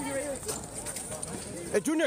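Several excited voices shouting and calling out over one another, with a sharp knock near the end.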